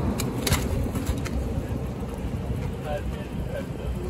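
Outdoor scene noise with a steady low rumble, a few sharp clicks and knocks in the first second, and faint voices from about three seconds in.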